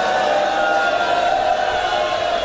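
A man's voice over a loudspeaker holding one long drawn-out note in a chanted recitation.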